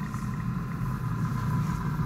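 A steady low rumble with a thin, steady high tone held above it.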